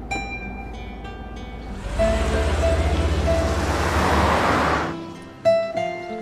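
Gentle plucked-string background music, with a car passing by: from about two seconds in, a swelling rush of tyre and engine noise over a low rumble, growing louder and brighter until it cuts off abruptly about five seconds in.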